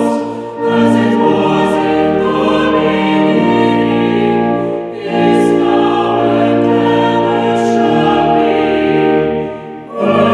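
Small mixed vocal ensemble of six singing in harmony, holding sustained notes in phrases, with short breaks about half a second in, around five seconds in and just before the end.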